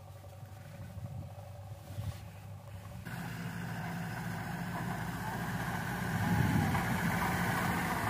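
Light goods truck's engine running as it drives across the yard, from about three seconds in, growing louder as it comes closer.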